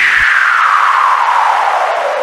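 Radio jingle transition whoosh: a noise sweep falling steadily in pitch throughout, with the music beneath it cutting off about a quarter-second in.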